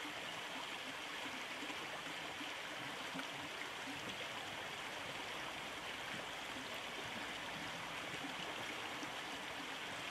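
River water running steadily over stones.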